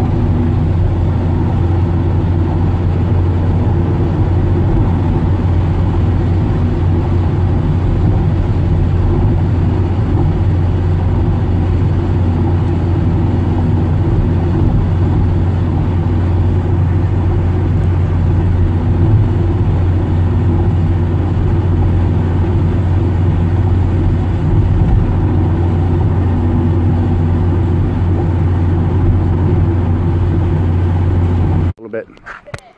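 Steady road and engine noise of a car cruising at highway speed, heard from inside the cabin: a loud, even low drone with no break.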